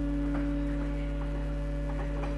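Pipe organ holding a sustained chord, its notes steady and unchanging, over a constant low hum, with a few faint clicks.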